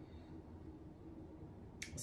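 Quiet room tone with a faint low hum, and one short sharp click near the end.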